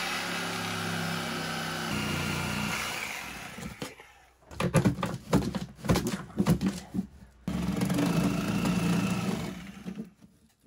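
Reciprocating saw cutting into a rusted buried metal pipe. The motor runs steadily for about four seconds, then irregular knocking and rattling follows as the blade works through the pipe, and near the end it runs steadily again.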